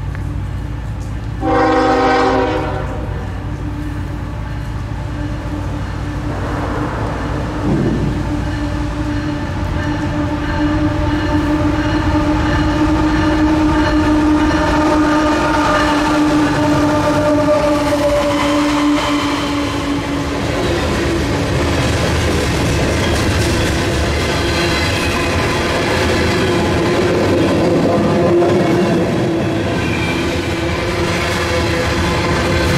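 CSX freight diesel locomotives sounding their horn: a short blast about two seconds in, then a long held blast that ends about twenty seconds in as the engines come by. After the horn the locomotives and coal hopper cars rumble and clatter past at close range.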